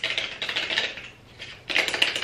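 Quick light clicks and taps of a small cardboard cosmetic box being handled and opened, thinning out in the middle and picking up again near the end.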